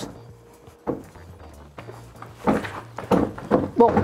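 A heavy wooden cabinet carried on lifting straps, giving a couple of light knocks in the first two seconds, then a stretch of voices and movement near the end.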